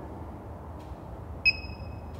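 JVA alarm keypad: a key-press click and a single high, steady beep about one and a half seconds in, lasting about half a second.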